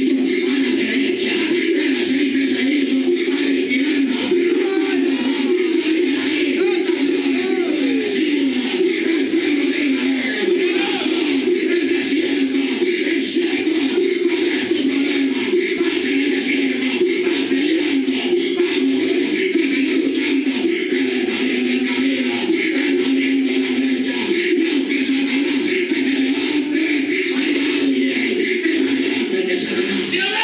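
A man's voice shouting continuously into a microphone through a church PA system, loud and distorted, with music underneath.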